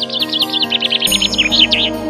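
A songbird singing a fast trill of short, downward-slurred high notes, about ten a second, which stops just before the end. Background music with sustained, held chords continues underneath.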